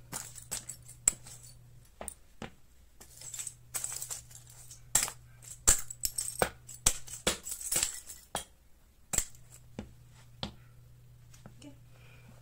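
Hard plastic toothbrush holders cracking and crunching under sneaker soles as they are stomped on. The cracks come in an irregular string of sharp snaps, busiest in the middle.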